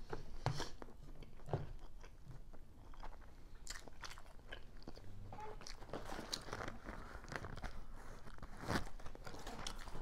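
Close-miked chewing of crispy fried chicken wings: irregular crunches throughout, with one sharper crunch near the end.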